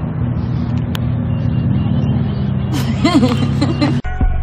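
An engine running steadily with a low hum, with a short voice-like sound near the end.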